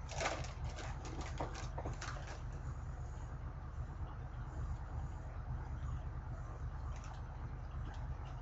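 Foil-lined snack bag crinkling as a hand rummages in it for about two and a half seconds, then a few faint crunches of chewing over a steady low hum.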